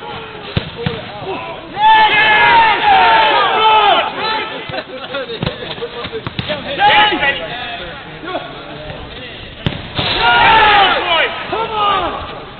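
Footballers shouting and calling to one another in three loud bursts, with several sharp thuds of the ball being kicked in between.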